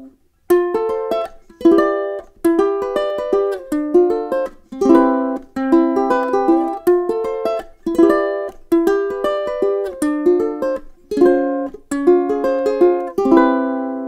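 Kanile'a KPA C/PG concert ukulele, solid premium-grade Hawaiian koa body with fluorocarbon strings, played solo: a rhythmic run of strummed chords with a picked melody, starting about half a second in. It ends on a chord left to ring out.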